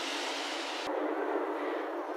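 Steady outdoor city street background noise, an even hiss-like rumble with no voices. About a second in a faint click is followed by the noise turning duller and less hissy.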